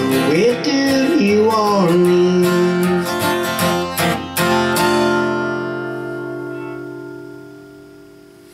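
Acoustic guitar strumming the closing chords of a country song, with the singer's last note held and bending in pitch over the first two seconds. The final chord rings and fades away over the last three seconds.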